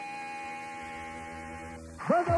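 Electric guitar sustaining a single held note that slowly fades, then cuts off shortly before the end.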